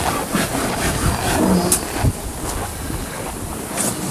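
Low rumbling wind noise on a phone's microphone, with handling noise as it is carried.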